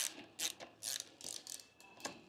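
Hand ratchet clicking in a series of short bursts as the positive terminal bolt of a motorcycle battery is loosened.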